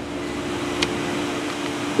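Steady mechanical hum holding two low steady tones over a light rushing noise, growing slightly louder, with one short click just under a second in.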